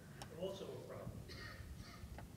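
Faint, distant speech from an audience member heard off-microphone: a couple of short phrases, well below the level of the amplified speakers.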